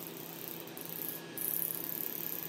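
Low, steady hiss of moving air with a faint machine hum from the laser treatment equipment running.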